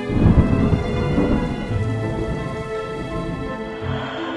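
A thunder sound effect: a sudden deep rumble, loudest in the first second and then rolling and slowly fading, laid over held orchestral music notes.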